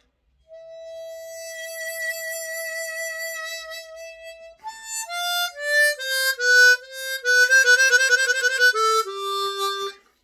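Harmonica playing a long held note for about four seconds with a slight waver in pitch, shaped with a bend and tremolo together to thicken it. It then plays a short run of falling notes with a fast trill and ends on a lower held note.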